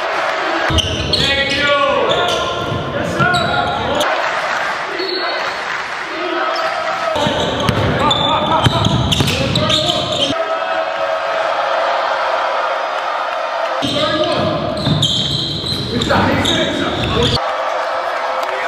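Indoor basketball game sound: a ball bouncing on the court among voices in a large gym. A deeper layer of sound cuts in and out abruptly three times.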